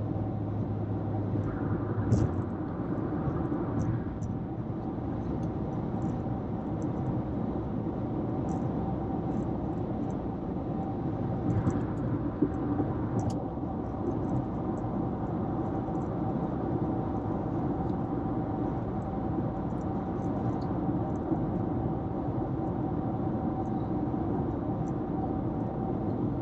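Steady road and engine noise of a car cruising at highway speed, heard from inside the cabin, with a faint steady tone running through it. There are a couple of brief bumps, about two and twelve seconds in.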